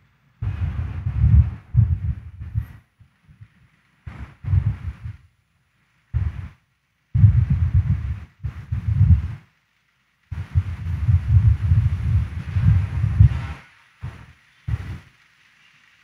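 Irregular bursts of low rumbling noise, some brief and some lasting a few seconds, with dead-silent gaps between them.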